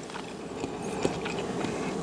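Faint crackle and a couple of small clicks of hands picking seafood off a tray.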